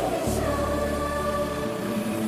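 Background score music with sustained, choir-like singing voices over held low notes.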